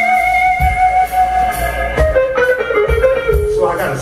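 Live blues band playing: an electric guitar holds one long note, then plays a falling phrase from about halfway through, over kick drum and bass.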